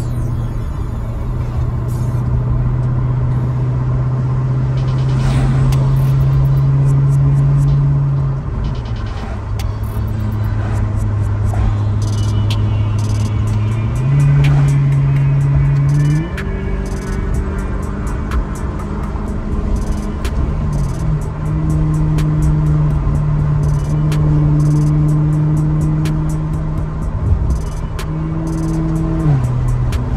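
Background music with a steady beat, over the Maserati GranTurismo's engine and road noise heard from inside the cabin at cruising speed.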